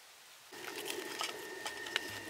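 Near silence for about half a second, then a steady outdoor hiss with a few light knocks and clicks of split firewood being handled, the sharpest just before the end.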